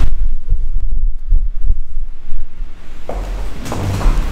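Microphone handling noise: low, irregular thumps and rumble as a handheld microphone is carried by someone walking.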